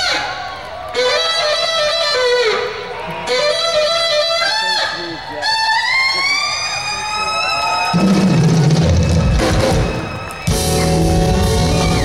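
Alto saxophone playing solo phrases with a long upward bend. About eight seconds in, the electric bass and drum kit come in under it with the band, stop briefly, then come back.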